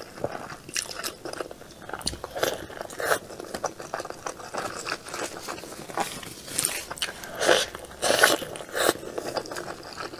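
Close-miked mouth sounds of a person chewing soft, sauced rice noodle rolls. Irregular wet smacks and clicks come throughout, loudest in a cluster a little after the middle.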